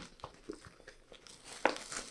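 Phone book pages tearing and crinkling one at a time as the book is twisted between the hands: scattered crackles, with a sharper tear near the end.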